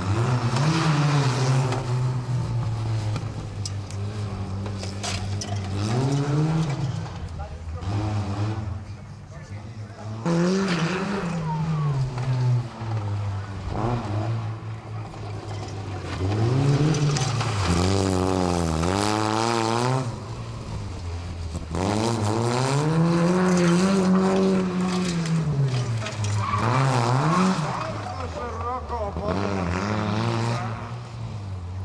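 Fiat 126p's small two-cylinder engine revved hard and backed off again and again as the car is thrown round a loose gravel course, its pitch climbing and falling every few seconds, with one long high-revving stretch after about twenty seconds.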